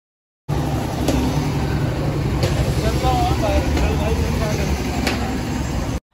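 Steady street traffic noise with a heavy low rumble, cutting in abruptly after a brief silence, with a few sharp clicks and faint voices about halfway through.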